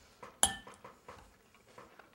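Fork clinking against a dinner plate: one sharp, ringing clink about half a second in, then a few softer taps of cutlery on the plate.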